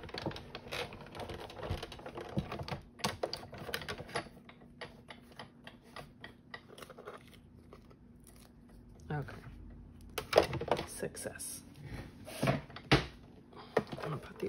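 Hand-cranked Sizzix Big Shot die-cutting machine, its rollers drawing a sandwich of plastic cutting plates and dies through on a second pass, with a steady run of small clicks. A few louder knocks come near the end as the plates are handled.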